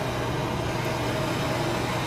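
Steady rushing noise with a constant low hum from the burn-test cabinet, where a burner flame is playing on a polyisocyanurate foam panel in its first flaming stage.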